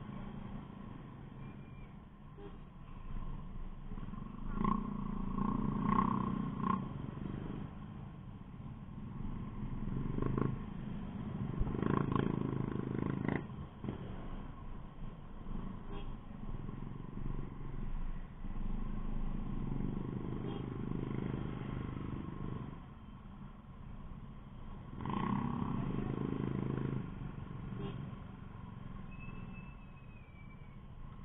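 Small motor scooter engine running at low speed in slow street traffic, with a steady low rumble. The sound swells four or five times as the throttle opens and eases off.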